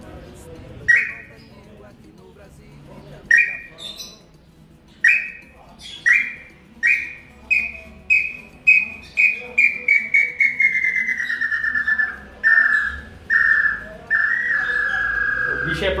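Hand-made bird-call whistle (pio) blown to imitate a bird's song: a few spaced whistled notes, then a quickening run of short notes that slowly falls in pitch, ending in a long held note near the end.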